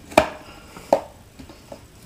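A lid fitted onto a small cup: two sharp clicks, the first about a fifth of a second in and a second, slightly weaker, under a second later, followed by a couple of faint ticks.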